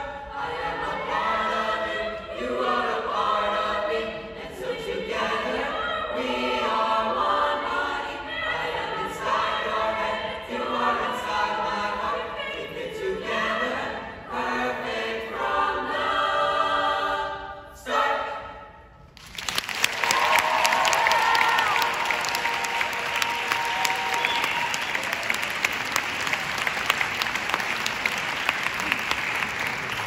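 Mixed high school choir singing in parts, closing on a held chord about eighteen seconds in. After a brief gap the audience breaks into applause, which continues.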